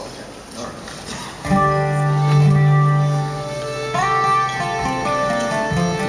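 Acoustic string instruments through the stage PA, holding sustained notes that start about a second and a half in. Near four seconds the pitch slides up into a new set of notes.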